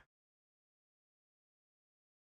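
Complete silence: the sound track drops out entirely.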